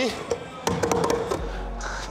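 A few sharp taps and knocks as a climber's hands and shoes strike the holds of an indoor bouldering wall during a jumping move, over quiet background music.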